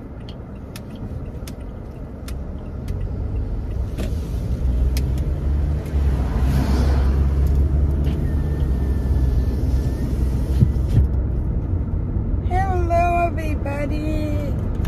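Car interior while driving: engine and road rumble builds over the first few seconds and stays strong, with light ticks scattered through it. A woman's voice starts near the end.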